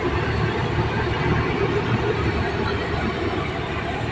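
Steady road and engine rumble of a car on the move, heard from inside its cabin.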